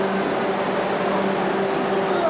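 A steady low machine hum over a constant background rush.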